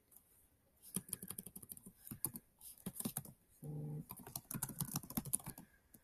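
Typing on a computer keyboard: a quick, uneven run of soft key clicks starting about a second in, with a short low hum a little past halfway.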